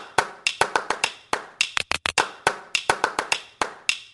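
A rhythmic beat of sharp taps, about five a second in an uneven pattern, each with a brief bright ring.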